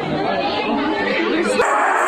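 Crowd chatter: many excited voices talking at once in a busy hall. About one and a half seconds in it cuts abruptly to a thinner, hissier crowd sound.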